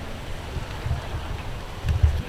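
Low, uneven rumble of wind buffeting the microphone, gusting harder about a second in and again near the end.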